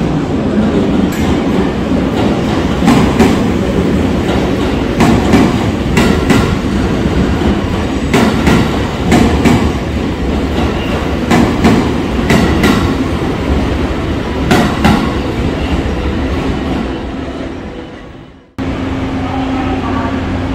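Electric train running past at close range, its wheels clicking over rail joints, mostly in pairs, every second or two. The sound fades away near the end.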